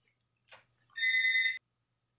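A single electronic beep about a second in: a steady high tone lasting about half a second. A faint low hum runs underneath.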